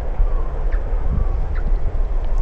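Steady low rumble of wind buffeting the camera's microphone.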